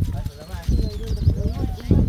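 Voices of people talking nearby, without clear words, over a dense, irregular low rumble and thumping on the phone's microphone.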